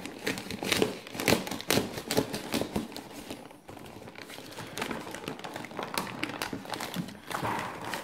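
A plastic postal mailer and the black packing material inside it being pulled and torn open by hand: a run of irregular crinkling and crackling, with a short lull about halfway through.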